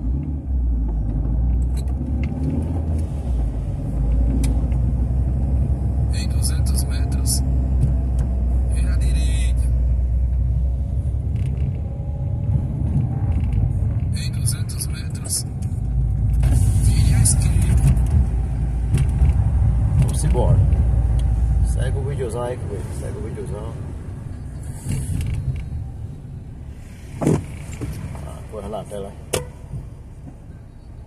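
Car on the move: a steady low engine and road rumble that eases off about 22 seconds in, with scattered brief clicks and knocks over it.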